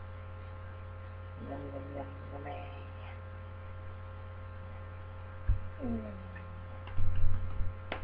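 Steady electrical mains hum with a low buzz runs under the recording. There is a single thump about five and a half seconds in, then a cluster of loud bumps and knocks near the end as the person moves away from the webcam.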